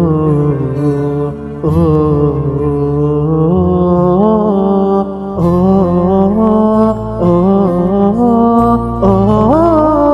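A man singing a Malayalam Islamic devotional song, drawing out long ornamented notes that bend and waver in pitch, over low sustained backing notes that shift a few times.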